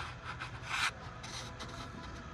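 Quiet scuffing and rubbing of someone walking while holding a phone, a few short rough bursts with the loudest about three quarters of a second in.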